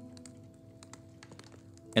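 Soft background music, a low sustained drone, with faint light ticks scattered through it.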